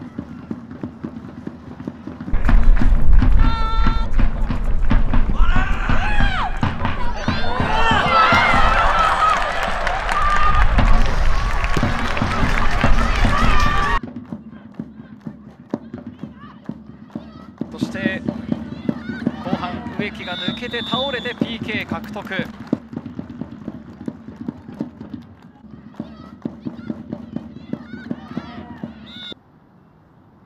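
Footballers' voices shouting and celebrating a goal on the pitch, with wind rumbling on the microphone. About fourteen seconds in it cuts off sharply to quieter pitch-side sound with scattered shouts and short knocks.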